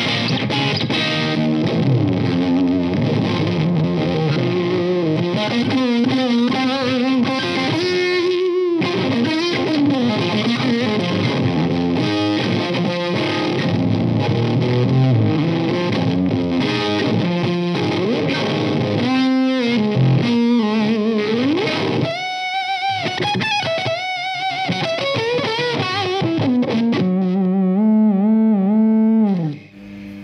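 Electric guitar played through a Fuzz Face fuzz pedal into an Orange Guitar Butler two-channel preamp pedal, its gain at about halfway: thick, heavily fuzzed rock riffing. In the second half come bent, wavering lead notes, and near the end a few long notes held with vibrato.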